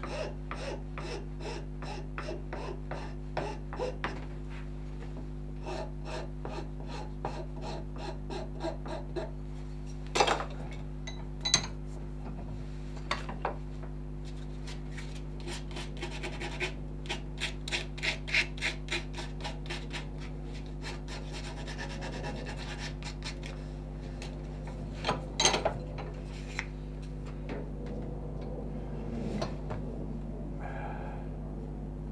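A hand file rasping over a carved wooden dog's head in short, uneven strokes, with a few louder strokes now and then. A steady low hum runs underneath.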